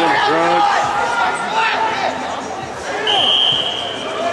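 Voices shouting on and around a rugby pitch, then one steady, shrill referee's whistle blast of nearly a second about three seconds in.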